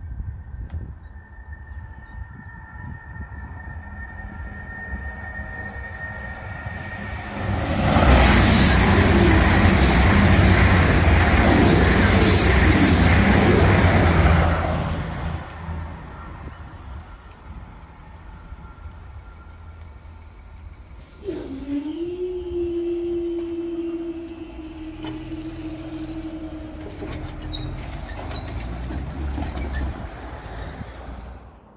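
Two coupled Class 222 Meridian diesel multiple units passing at speed through the level crossing: a loud rush of wheel and engine noise that starts suddenly and lasts about six seconds, after faint high ringing from the rails as they approach. About twenty seconds in, a motor whine starts, dips, then holds steady for several seconds as the crossing barriers rise.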